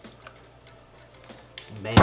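Milk trickling from a plastic gallon jug into a glass measuring cup, faint, with small clicks, then a single sharp thump near the end as the jug is set down on the stone countertop.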